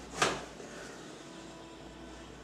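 A single short, sharp knock about a quarter second in, followed by steady quiet room tone.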